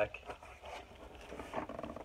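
Cardboard box flaps being pulled open, with faint scraping and rustling of cardboard.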